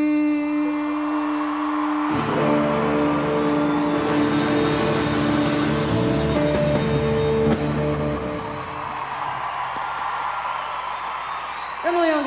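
A live band's ending: one held note, then a full final chord with bass that rings for several seconds and dies away about eight seconds in. Audience cheering and applause run underneath and carry on after it.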